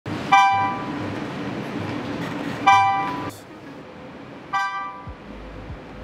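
Three identical bright electronic chimes, each a sharp ding that fades within about half a second, spaced about two seconds apart, over a steady low hum that drops away about halfway through.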